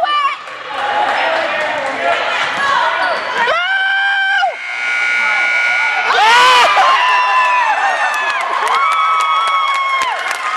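Basketball dribbled on a gym's hardwood floor under spectators' shouting. About three and a half seconds in, the scoreboard buzzer sounds a steady tone for about a second to end the period. About six seconds in, the crowd breaks into cheering and long shouts for the buzzer-beating three-pointer.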